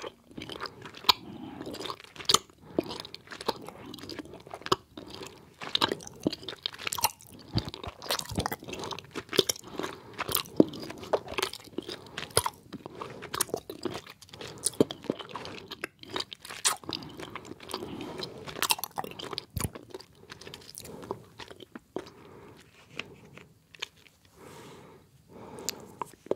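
A person chewing soft gummy candies with wet smacking mouth sounds: irregular sharp sticky clicks, several a second.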